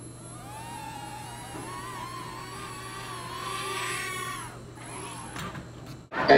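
Small electric motors of a toy Millennium Falcon-shaped quadcopter drone whining as they spin up, holding a wavering high pitch, then winding down about four and a half seconds in. A couple of short clicks follow near the end.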